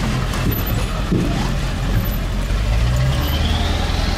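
Pickup truck carrying a camper, driving slowly on a dirt road, heard from inside the cab: a steady low engine and tyre rumble with scattered short knocks and rattles.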